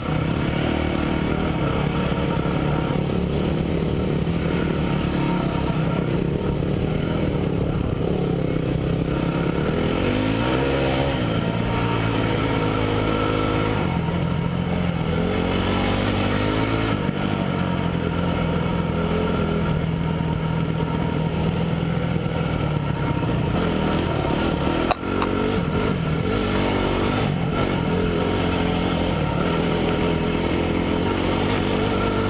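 Single-cylinder four-stroke engine of a Honda CRF trail bike running under way, its pitch rising and falling as the throttle is opened and closed. Late on, one sharp click.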